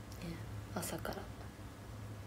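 A woman speaking softly under her breath, in two short bits near the start and about a second in, over a steady low hum.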